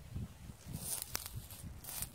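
Faint rustling and soft handling sounds of someone moving in the grass beside a flat gravestone, with one sharp click a little past a second in.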